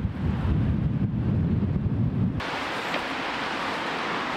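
Outdoor wind buffeting the microphone as a dense low rumble; about two and a half seconds in it cuts abruptly to a steadier, higher rushing noise.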